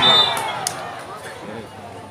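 Spectators cheering and shouting after a point, dying away over the first second into a low murmur of voices.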